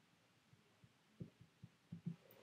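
Near silence with faint, soft taps of a pencil writing on squared paper, about six of them spread over the second half.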